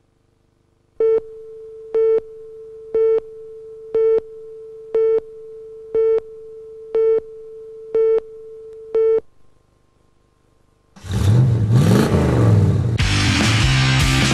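A pitched electronic beep repeating nine times, once a second, over a faint steady tone, then after a short gap a punk rock band starts playing loudly with distorted guitars and drums.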